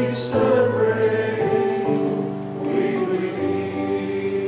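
A choir singing a slow hymn in long, held notes.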